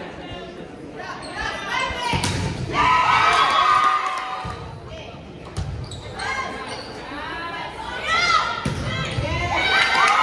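Indoor volleyball rally: the ball is struck with a sharp smack about two seconds in, among further ball contacts and players calling out, all echoing in a large gym.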